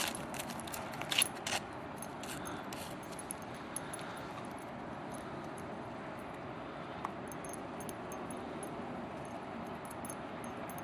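A dog digging at ice-crusted snow, its paws scratching and breaking the crust: several sharp clicks and crackles in the first three seconds, then a steady faint hiss with a few small ticks.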